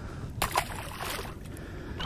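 Water splashing and lapping against the side of a boat, with a single sharp click about half a second in followed by a short burst of splashing.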